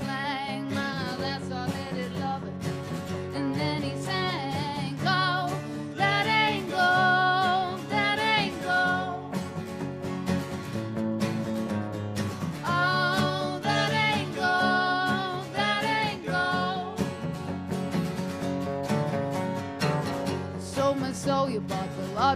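A live band with no drums: a woman sings over two acoustic guitars and an electric guitar, her sung lines rising and falling with vibrato.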